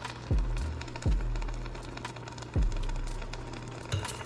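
Ground turkey and vegetables sizzling in an enamelled cast-iron Dutch oven, with three low, blooping pops as the cooking food bubbles.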